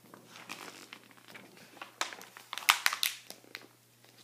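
Pages of a picture book being handled and turned: soft paper rustling, with a cluster of sharp crackles of the page about two to three and a half seconds in.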